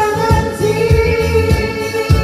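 Karaoke singing through a microphone over a loud pop backing track, a held sung note wavering slightly above a steady kick-drum beat.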